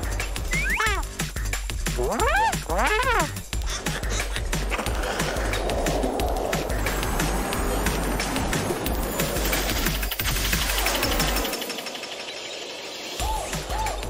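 Cartoon background music, with a few rising-and-falling whistle-like glides in the first few seconds and a short quieter stretch near the end.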